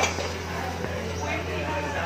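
Restaurant background: indistinct chatter of diners over a steady low hum.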